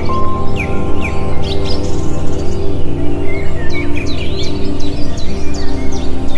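Calm background music of long held notes, mixed with many chirping bird calls that come quickly one after another.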